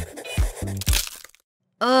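Pencil lead snapping with a sharp crack a little before the middle, over background music with a steady beat.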